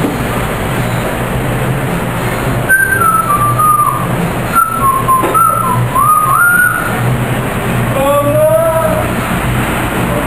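A person whistling a short tune of stepping, sliding notes over a steady low rumble, followed about eight seconds in by a brief lower pitched note.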